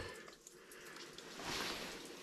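Faint rustle of a person shifting their clothing and gear while crouched, getting a little louder in the second half.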